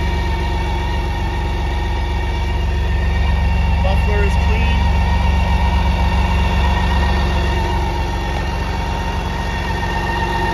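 A vehicle engine idling steadily, with a constant low hum and a faint steady whine above it.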